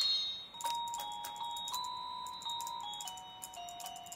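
Bárala Fairies toy magic wand playing electronic chime notes, one note per shake, stepping through a familiar children's melody. The notes are held for uneven lengths, so the tune comes out halting and messy.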